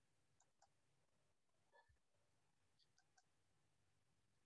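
Near silence, with a few very faint scattered clicks.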